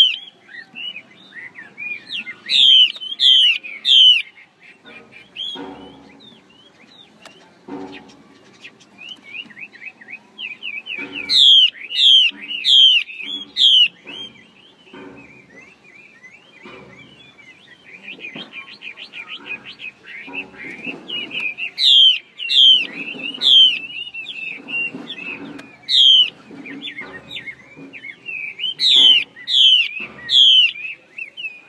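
Female Chinese hwamei calling: clusters of three or four loud, sharp rising notes, repeated several times over a run of quieter twittering. It is the female call that keepers use to stir male hwamei into song.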